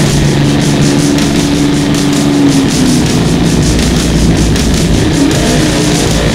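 Heavy metal instrumental: distorted electric guitar holding long, bending lead notes over a steady drum beat.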